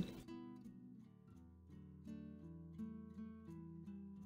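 Quiet background music: a run of plucked acoustic guitar notes, with a brief lull about a second in.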